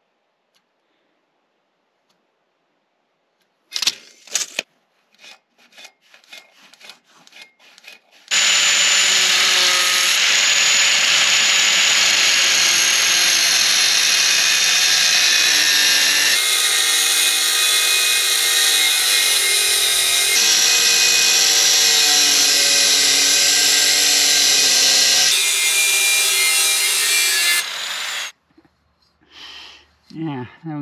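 Angle grinder cutting through the bottom of a steel boat-trailer support leg: a loud, steady grinding whine with pitched tones that shift as the disc bites, starting about eight seconds in and stopping shortly before the end. Before it come a few seconds of scattered knocks and clicks.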